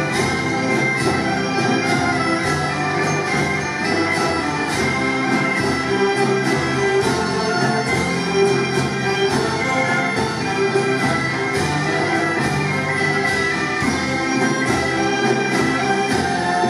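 Bagpipes playing a melody together with a large concert band and orchestra of winds and strings.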